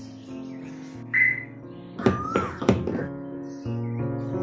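Car door handle being pulled and the door latch clicking, heard as a few sharp clicks and clunks about two to three seconds in, after a brief high tone about a second in, over soft background music.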